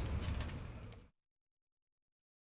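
A low rumbling noise with a few faint clicks fades out and cuts off about a second in, leaving silence.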